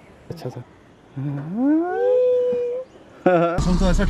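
A single long, howl-like vocal 'ooo' from a person's voice, gliding up from low to high pitch and then holding the high note briefly. Near the end a man starts talking over the steady low hum of a car cabin.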